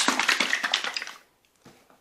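A plastic squeeze bottle of mixed acrylic pour paint being shaken, a fast run of rattling strokes for about a second that then stops.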